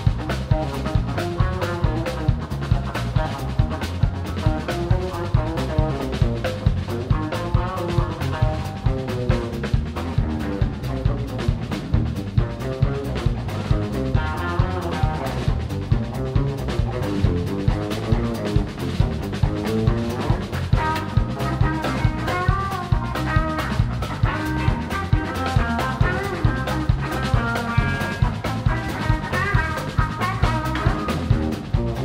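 Live blues-rock band playing an instrumental boogie: a lead electric guitar solo with bending notes over drum kit and bass, on a steady beat of about two strokes a second.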